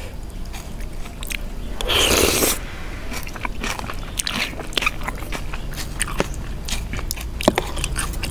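Close-miked eating: instant noodles from a spicy Thai chicken-feet salad slurped in one loud rush about two seconds in, then wet chewing with many small clicks and the metal fork and spoon scraping the bowl.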